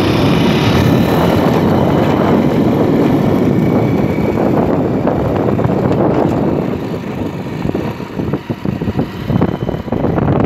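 A small vehicle engine running steadily at speed as it moves, with wind rushing over the microphone. The last few seconds turn choppy and uneven.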